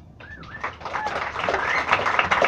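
Audience breaking into applause, clapping with high whoops and cheers, starting about a quarter second in and quickly growing louder.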